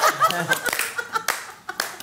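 A few people clapping, a string of separate claps rather than a dense roar of applause, with talk and laughter among them.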